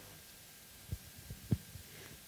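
A microphone being handled between speakers: three or four soft, low thumps over quiet room tone around the middle.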